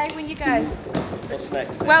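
People's voices calling out and talking, with no clear words.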